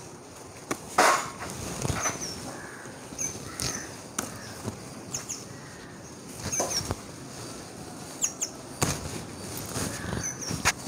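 Eggplant plants being handled: leaves and stems rustling, with a scatter of sharp snaps and crackles, the loudest about a second in. Small birds chirp in short high notes in the background.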